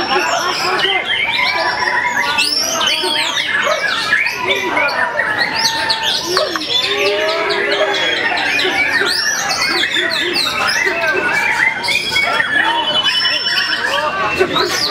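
Many caged white-rumped shamas (murai batu) singing at once in contest, a dense, unbroken mass of overlapping whistles, chirps and trills, with a crowd's voices beneath.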